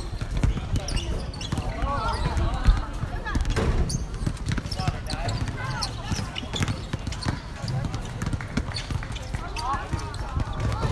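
Basketball bouncing and short sharp knocks on a hard court, amid the scattered voices of players and onlookers calling out. The loudest is a single sharp thump about three seconds in.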